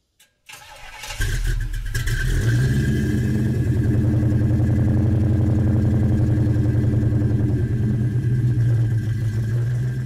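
A car engine cranks briefly, catches about a second in, and settles into a steady idle.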